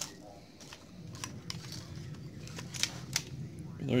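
Handling noise of metal chainsaw cylinders being picked up and handled on a workbench: a few sharp, irregular clicks and light knocks.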